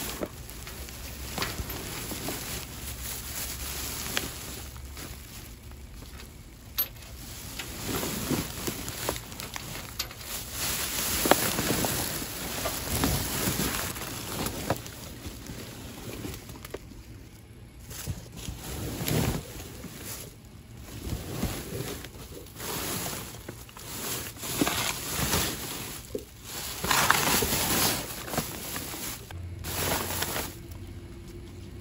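Clear plastic trash bags crinkling and rustling as gloved hands grab and shift them, in irregular bursts with a few sharper crackles.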